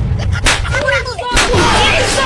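Two loud bangs about a second apart over a continuous low rumble, like gunfire or explosions.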